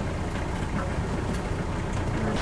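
Steady low rumble with a wash of wind and water noise from a sailboat motoring slowly in idle forward gear.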